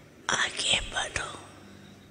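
A person whispering a short phrase, about a second long, starting a quarter of a second in.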